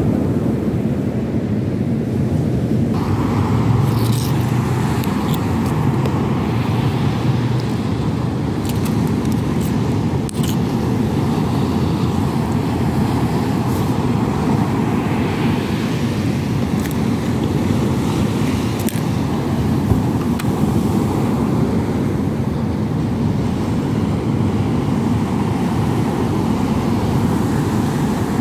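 Strong wind on the microphone and rough surf making a steady, loud rumble, with a few faint clicks from hands working bait.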